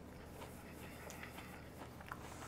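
Faint chewing of a bite of crunchy, cornflake-crusted deep-fried arancini, a few small crunches over a low steady room hum.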